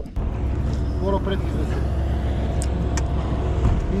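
Small boat's outboard motor running steadily, a low even drone.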